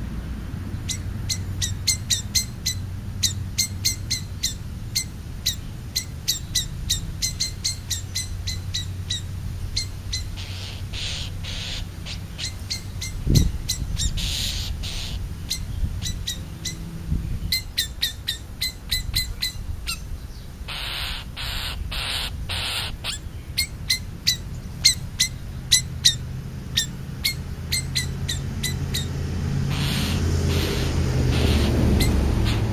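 A small bird chirping over and over, two or three short high chirps a second, with a run of four harsh crow caws about two-thirds of the way through and one thump near the middle. A steady low rumble runs underneath.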